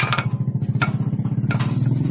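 Small engine running with a rapid, even beat, picking up slightly near the end, with a few light knocks as areca nuts are dropped into the peeling machine's drum.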